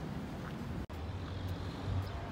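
Steady low rumble of outdoor city ambience, with a brief sharp break about a second in, after which a low hum runs steadily.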